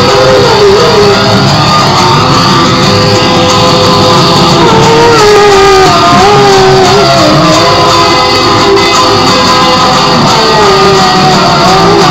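Electric guitar playing a loud lead line of sustained notes that bend up and down, with vibrato on the held notes.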